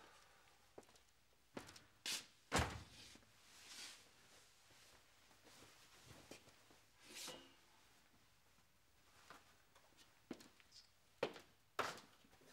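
A person moving about a room handling things: scattered clicks and knocks, a louder thunk about two and a half seconds in, and a few short rustles.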